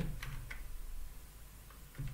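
A few soft computer-keyboard keystrokes as a terminal command is typed, in a short cluster about half a second long and then a single keystroke near the end.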